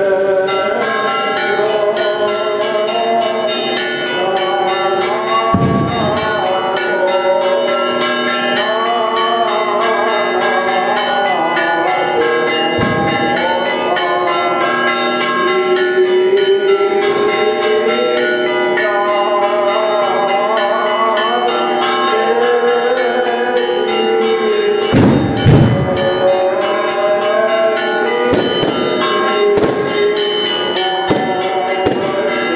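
Church bells pealing in a rapid, continuous festive ringing for the Easter Resurrection. Three loud bangs from fireworks break through, about five seconds in, about thirteen seconds in, and a double bang near twenty-five seconds.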